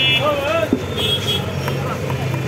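Busy street background of people's voices over a steady traffic hum, with one sharp knock a little under a second in from a cleaver striking the wooden chopping block.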